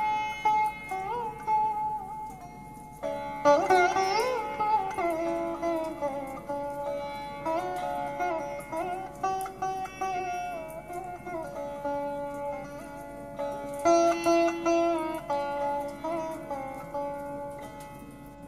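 Sitar playing a slow melody with gliding pitch bends on held notes, with more strongly plucked phrases about three and a half seconds in and again near fourteen seconds.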